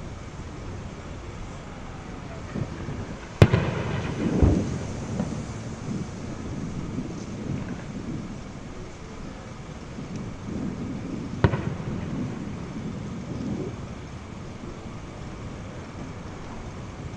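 Two distant explosion booms over steady outdoor background noise. The first, about three seconds in, is a sharp crack followed by a low rolling rumble lasting about a second. The second, about eight seconds later, is a shorter, sharper crack.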